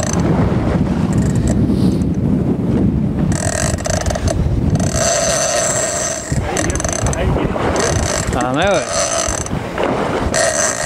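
Big-game fishing reel's drag whining in several short bursts as a bluefin tuna pulls line off against heavy drag, over a constant rumble of wind and water on the microphone.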